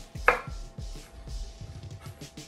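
Kitchen knife chopping green chillies on a wooden cutting board, a run of quick repeated strokes with one sharper knock about a quarter-second in.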